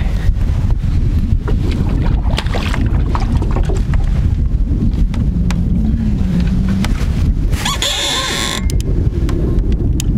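Wind buffeting the microphone in an open boat, a steady low rumble with scattered knocks, and a short bright rush of noise about eight seconds in as the fish is let back into the water.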